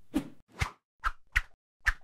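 A quick run of short swishing hits, five in two seconds and evenly spaced: edited whoosh-and-thwack sound effects marking each piece of safety gear as it is set down.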